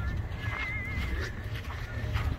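A short animal call with a warbling, wavering pitch, starting about half a second in, over a steady low rumble.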